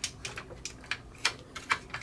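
Plastic hinges and panels of a Studio Cell Unicron transforming figure clicking as they are flipped out and handled, a handful of short sharp clicks spread through.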